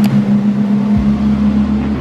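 Cruise ship's horn sounding a long, loud, steady low blast of several held tones, with a deeper tone joining about halfway through, as the ship leaves port.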